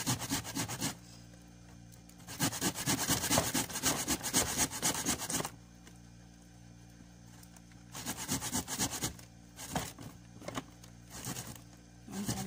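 Peeled ginger rasped on a hand grater: fast scraping strokes in three runs with short pauses between them.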